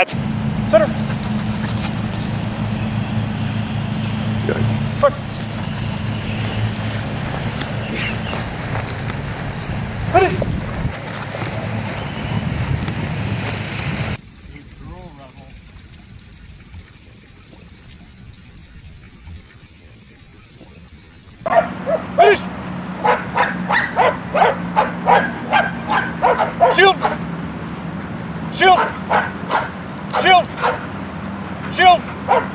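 A dog barking in a fast, repeated run of sharp barks through the last third. Before that there is a steady low hum with a few short, high whines or yelps, then a quieter stretch in the middle.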